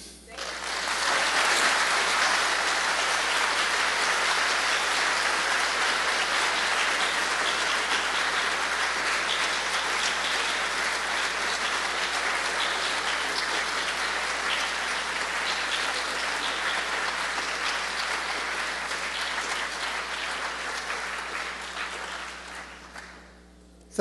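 Audience applauding, holding steady for about twenty seconds and fading out near the end.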